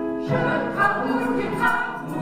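A choir of men and women singing together over a musical accompaniment, coming in about a third of a second in over sustained keyboard notes.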